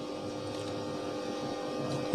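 Steady background hum with a few faint held tones.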